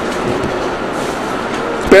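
Steady, even background noise of the hall, a constant hiss with a low rumble, during a pause in speech; a man's voice comes back right at the end.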